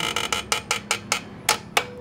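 Ratchet of a 1/2-inch torque wrench clicking in a string of sharp, irregular clicks as it is worked back and forth to tighten a scooter's muffler mounting bolt.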